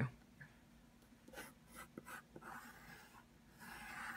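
Colored pencil drawing on patterned scrapbook paper: a few faint, short scratching strokes with quiet gaps between them.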